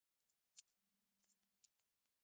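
A steady, very high-pitched electronic whine starting a moment in, with two or three faint clicks over it; otherwise there is no sound.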